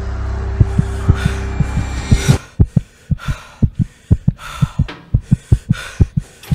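Heartbeat sound effect, deep thumps in lub-dub pairs about two a second, a racing heartbeat. At first it runs under a low droning rumble, which cuts off suddenly a little past two seconds in, leaving the heartbeat alone.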